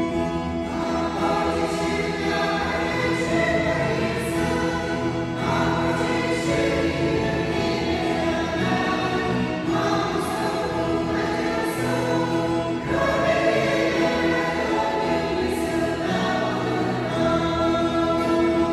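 Mixed choir of men's and women's voices singing a hymn together, in sustained phrases a few seconds long.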